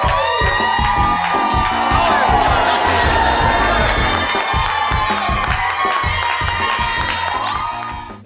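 A crowd of young children cheering and shouting together, with rhythmic clapping and music underneath.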